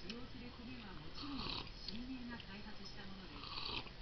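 Two airy slurping sips of coffee from a mug, the first a little past a second in and the second near the end, with a low voice between them.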